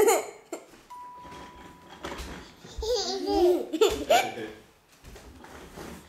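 A baby laughing in a run of short, pitched bursts about three to four seconds in.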